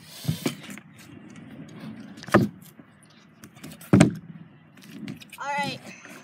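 Stunt scooter wheels rolling across a plywood ramp, then two sharp clacks of the deck and wheels hitting down about a second and a half apart. The second clack, near four seconds in, is the louder: the rider landing a 90 off.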